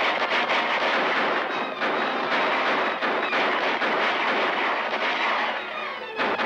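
Many horses galloping, a dense clatter of hoofbeats, with rifle and pistol shots fired over it.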